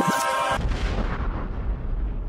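Hip hop outro music stops about half a second in and gives way to a deep, rumbling boom that fades slowly.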